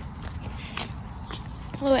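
Footsteps on an asphalt driveway, sharp scuffs about every half second over a low steady rumble.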